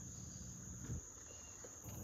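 Faint, steady high-pitched drone of insects such as crickets, with one soft knock about a second in.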